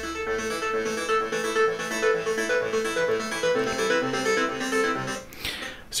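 Serum software synthesizer patches with sawtooth oscillators, one set to 8-voice unison and detuned, playing a sequence of short pitched notes through a MacBook Pro's speakers. The notes stop about five seconds in.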